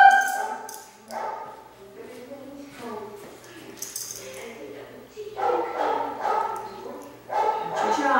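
A five-month-old Gordon Setter puppy whining and yipping excitedly in a few short bursts, the loudest in the second half, the last with a falling pitch.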